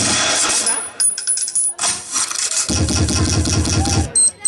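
Recorded dance mix played loud over a loudspeaker, in a stretch of electronic sound effects: a row of short high pips in the first half, then a heavy, bass-filled passage from a little under three seconds in.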